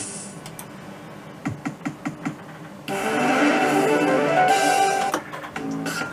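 Merkur Rising Liner slot machine's electronic sound effects: a run of short clicks, then a loud electronic jingle of a couple of seconds starting about three seconds in, followed by more clicks as the machine moves to its card-gamble game.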